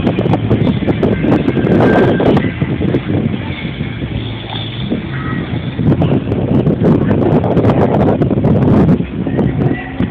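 Busy waterway ambience: boat motors and wind on a phone's microphone, with a steady, rough rumble and faint voices behind.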